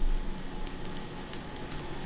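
A soft thump, then faint rustling and small clicks of a plastic zip-top bag as fingers press along its seal to close it.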